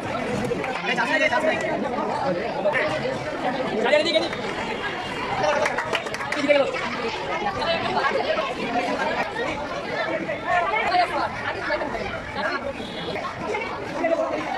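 A crowd of young people chattering, many voices overlapping at once with no single speaker standing out.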